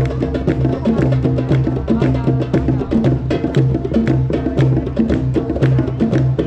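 Upbeat music with a quick, clicking percussion beat and a repeating bass line, played outdoors for dancers.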